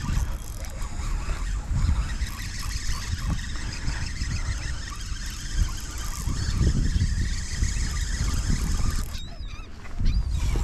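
Wind buffeting the microphone with a gusting low rumble, with birds calling over open water and a few short chirping calls near the end.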